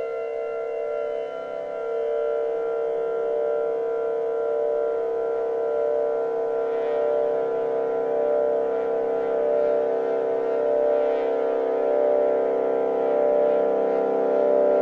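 Modular synthesizer, with a Physical Synthesis Cicada patched in, playing a sustained ambient drone of several held tones. One tone shifts about two seconds in, the upper tones flutter with a fast pulse, and the whole slowly grows louder.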